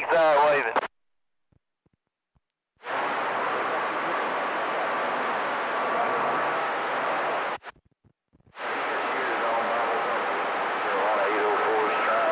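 CB radio receiver: a voice over the radio ends about a second in and the squelch closes to silence, then the channel opens twice on a hissing, static-filled signal with faint whistling tones, each burst starting and cutting off abruptly.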